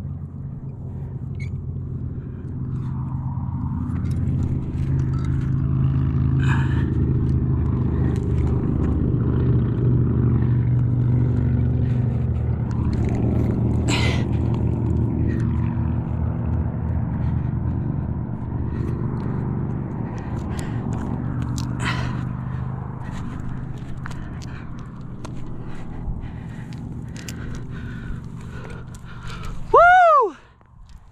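A steady low rumble throughout, with occasional scrapes and clicks of a climber's hands and shoes on granite, the clearest about fourteen and twenty-two seconds in. A short falling pitched sound comes right at the end.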